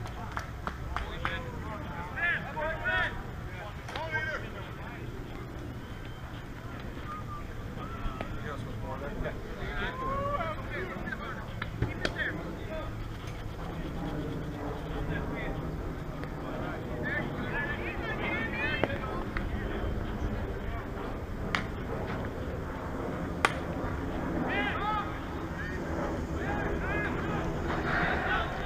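Distant voices of players calling and chatting across the field over a steady low wind rumble on the microphone, with a few sharp clicks.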